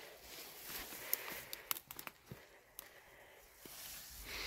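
Faint rustling of footsteps through dry weeds and brush, with scattered light snaps and ticks between about one and three seconds in.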